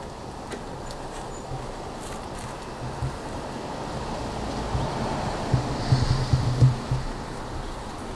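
Honeybees humming over an open hive while a steel hive tool pries a frame free, with a few light clicks of wood and metal. The hum swells about five seconds in as the comb covered in bees is lifted out.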